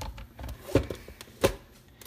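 Hard plastic knocks and clunks as a NutriBullet blender cup is set and twisted onto its metal motor base. There are two sharp knocks, one a little under a second in and one about a second and a half in, with lighter clicks around them.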